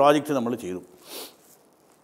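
A man speaking for under a second, then a short soft hiss about a second in, followed by dead silence.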